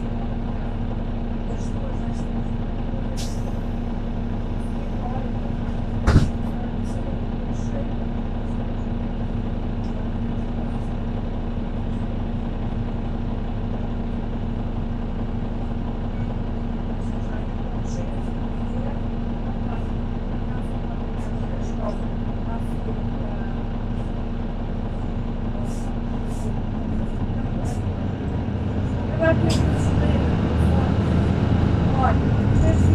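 Mercedes-Benz Citaro C2 K city bus heard from inside, its OM936 diesel engine running at a steady speed with a constant hum, and a sharp knock about six seconds in. Near the end the engine sound changes and grows louder.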